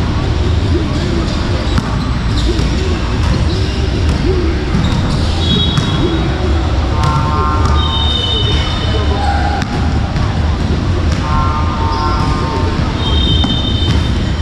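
Busy gym ambience: background voices with repeated thuds, and a few short high-pitched squeaks or tones.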